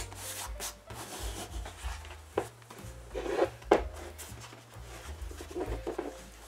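Hands rubbing and pulling one-way-stretch automotive vinyl over a motorcycle seat's foam base, in a series of short scuffing strokes, the loudest a little after three seconds in.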